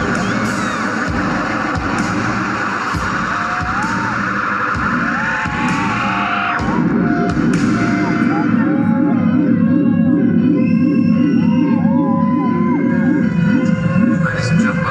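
Live electronic pop band playing, recorded from the audience: a song with a steady drum beat. About six and a half seconds in the beat stops and a fast-pulsing low drone takes over, with wavering, gliding tones above it.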